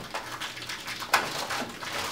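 Handling noise as packaging and gear are rummaged through: irregular rustling and small clicks, with one sharper knock about a second in.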